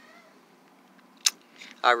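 A lull with one short, sharp click a little past halfway, then a man's voice begins near the end.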